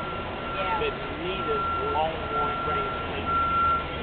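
Indistinct voices of people talking in the background, over a steady high-pitched tone that cuts out briefly about once a second.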